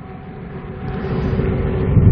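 A road vehicle approaching, its low rumble growing steadily louder.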